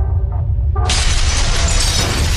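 Intro-animation sound effects over a deep, steady low rumble. About a second in, a sudden loud shattering crash sets off a dense spray of breaking debris that carries on.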